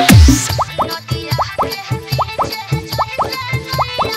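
DJ dance remix of a Bhojpuri song. Heavy booming bass kicks end just after the start with a short rising sweep. The beat then drops to a lighter rhythm of quick, upward-sliding pitched hits, often in pairs, over percussion.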